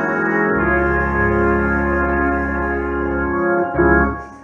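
Live church music: organ chords held under a trumpet, with a deep bass note coming in about half a second in and the band swelling onto a final chord near the end.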